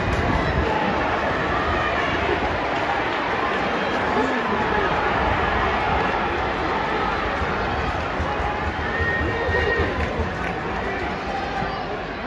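Football stadium crowd noise: a steady babble of many spectators' voices from the stands.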